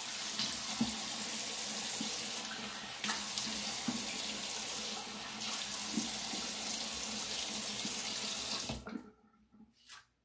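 Water running from a bathroom sink tap as a man rinses his head under it, with a few small splashes and knocks. The tap is shut off near the end and the flow stops suddenly.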